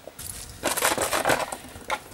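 A dog chewing on a plastic bottle, the plastic crunching and crackling in an irregular run of crinkly clicks.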